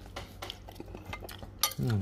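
Metal spoon and fork clinking and scraping against a ceramic bowl while stirring and lifting glass noodles in soup, a few light clicks and then a small burst of clinks near the end, with a brief low hum at the very end.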